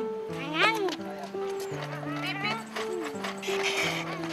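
Background music with a steady, simple melody, over a child's playful calls: one rising-and-falling cry about half a second in, then shorter calls around two to three seconds in.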